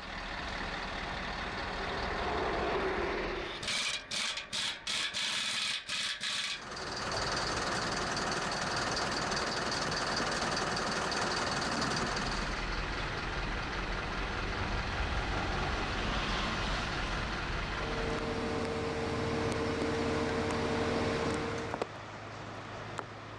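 Heavy diesel recovery truck running, with a stuttering burst of hissing air about four seconds in. Later, steady tones come and go over the engine noise.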